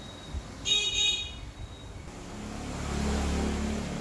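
A short electronic beep in two quick pulses about a second in, the loudest sound here, like an appliance's button beep. Over the last two seconds a low humming rumble swells and then eases off.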